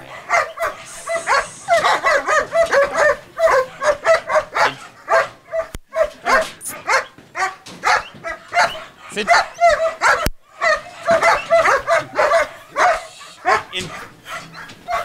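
German Shepherd yipping and whining in a continuous run of short, high cries, about three a second, excited while held in a sit-stay.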